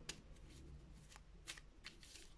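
Faint handling of a deck of tarot cards, with a few soft clicks of the cards about a second in and near the end.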